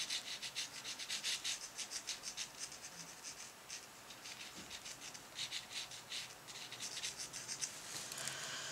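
Flat paintbrush stroking and dabbing across wet, textured watercolour paper: a faint, scratchy brushing made of many quick short strokes, busiest at the start and again a little past the middle.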